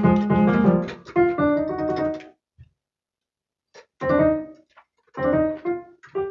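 Piano-sound keyboard improvisation: a busy run of notes, then about two seconds of near silence partway through, after which short phrases start again.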